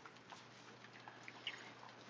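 Near silence: faint background hiss with a few soft, brief ticks.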